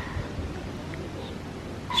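Wind buffeting a camera microphone that has no wind muff: a fluttering low rumble under a faint outdoor hush, with a laugh starting right at the end.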